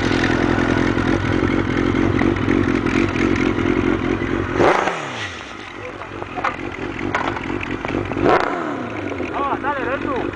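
Suzuki GSX-R 1000 inline-four running through a Yoshimura exhaust, held steady and then blipped twice, about halfway through and again near the end. Each blip ends in a sharp crack as the revs fall away.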